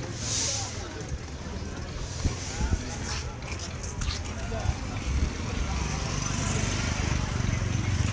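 Busy town street ambience: background voices and passing vehicle traffic under a steady low rumble, with a few short knocks.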